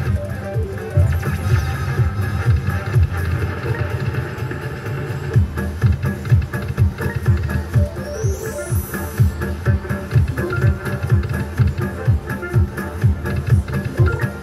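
Video slot machine's electronic free-spins bonus music with a steady fast beat, about three pulses a second, as the bonus games play out. A short rising sweep sounds about eight seconds in.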